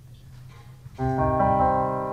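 Music on a keyboard: about a second in, a chord comes in suddenly and is held, with more notes joining on top of it within a fraction of a second.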